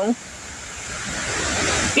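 Strong wind gusting through tall trees, a steady rushing that builds louder over about two seconds.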